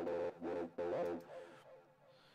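Electronic music playing back from a Bitwig Studio project: synthesizer notes sounding in a few repeated phrases, dying away near the end.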